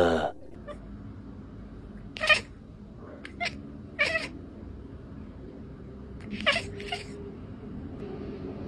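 Ginger tabby cat giving about five short, sharp calls, spaced over several seconds in two small groups.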